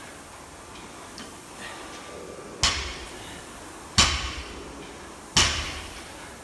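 Loaded barbell with 20 kg rubber bumper plates set down on a rubber gym floor three times, about a second and a half apart, as deadlift reps: each a sharp thud with a brief ring of the steel bar.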